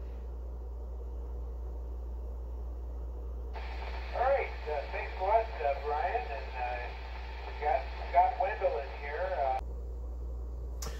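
A man's voice received over an amateur radio transceiver's speaker, thin and narrow-sounding, coming in about three and a half seconds in and cutting off abruptly just before the end as the other station unkeys. Under it and before it runs a low steady hum.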